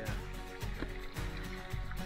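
Quiet background music with held notes and a light beat.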